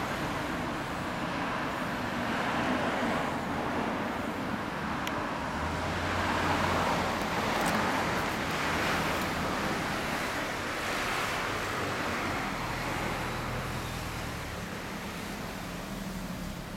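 Road traffic: cars passing on the street, the rumble swelling and easing as vehicles go by.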